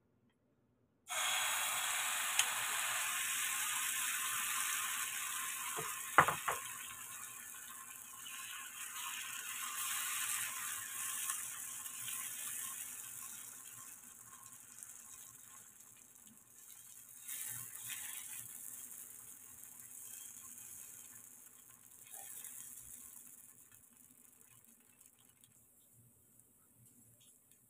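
Banana batter sizzling in hot oil in a non-stick frying pan. The sizzle starts suddenly about a second in, as the batter hits the pan, and slowly dies down. A few sharp knocks of a utensil against the pan come around six seconds in.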